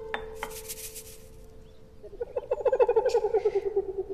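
Drama score on a plucked string instrument: a single note rings out, then in the second half a fast tremolo of rapid plucks on one pitch grows louder.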